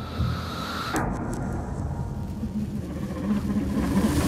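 Horror-trailer sound design: a dark, low rumbling drone with a few faint held low tones, struck by one sharp hit about a second in that rings off.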